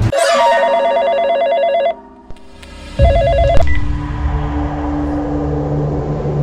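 Telephone ringing: a trilling ring of about two seconds, a pause of about a second, then a second ring cut short after about half a second by a click. A low steady hum follows.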